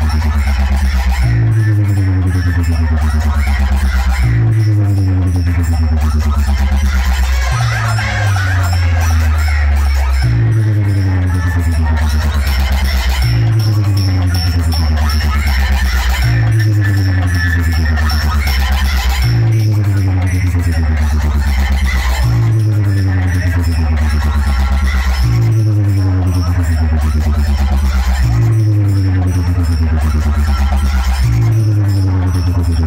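Electronic dance music played very loud through a stacked DJ speaker-box sound system, a deep bass note sliding downward in pitch and repeating about every three seconds.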